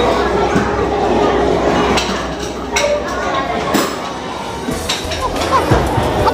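Busy restaurant din: background voices with occasional clinks of dishes and cutlery.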